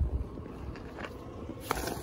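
Low wind rumble on the microphone with a few faint rustles and clicks, then a sudden grunt near the end as a leg cramp strikes the runner.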